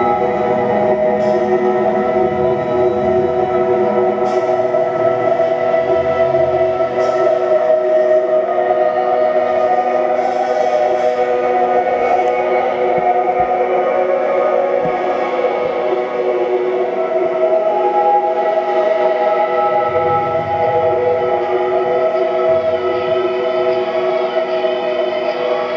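Live post-rock band holding a slow, sustained drone of keyboard and electric guitar chords, with low bass notes sounding in the first few seconds and again near the end.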